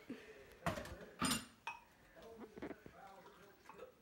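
Dishes clattering at a kitchen sink: a couple of sharp knocks and clinks about a second in as a blender's parts and a cup are handled, then a few softer knocks.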